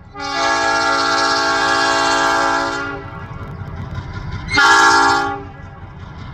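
EMD MP15DC diesel switcher's multi-chime air horn sounding a long blast of about three seconds, then a short blast about four and a half seconds in, the long-short part of a grade-crossing signal. The diesel engine's rumble runs underneath and grows louder around the short blast.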